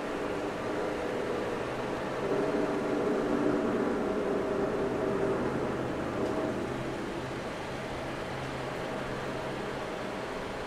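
Indoor room tone: a steady hum with hiss, swelling a little from about two seconds in until about six seconds in.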